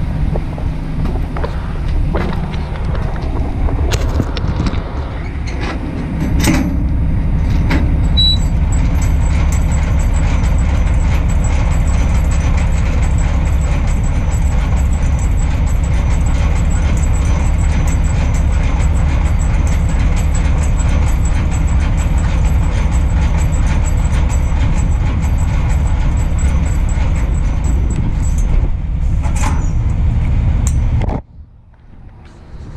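Semi-trailer landing gear being cranked by hand: a few knocks, then a steady grinding rumble with rapid, evenly spaced clicking from the gearing that keeps on until near the end.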